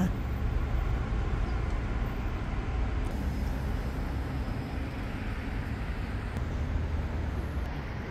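Steady outdoor city background noise: a continuous low rumble under an even hiss, typical of distant road traffic.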